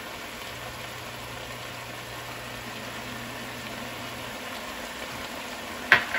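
Dungeness crab pieces sizzling steadily in a hot oiled skillet, with a faint low hum during the first few seconds. A light sharp click comes near the end.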